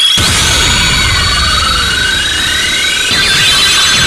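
Pachinko machine's electronic sound effects bursting in suddenly: sustained high ringing tones with sweeping pitch glides, one rising and one falling, over a low rumble and music.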